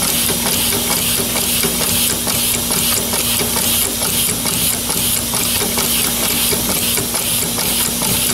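Homemade pneumatic ram engine running on compressed air: an even rhythm of metallic knocks from the valve slappers, with air hissing out at each stroke. A steady low hum runs underneath.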